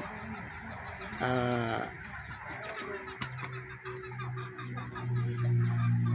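Chickens clucking in the background, with a brief voice about a second in and a steady low hum starting about halfway through.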